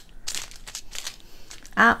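Small clear plastic bags of diamond painting drills crinkling and rustling in short, irregular scrapes as they are handled.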